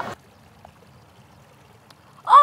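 Faint, steady background hiss after a voice cuts off at the very start, with a faint tick about half a second in and a sharper click near the end.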